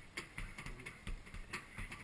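Fists striking a hanging heavy punching bag in quick succession: a series of faint short thuds, roughly three a second.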